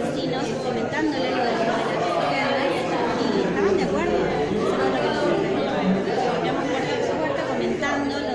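Overlapping chatter of many people talking at once in a crowded hall.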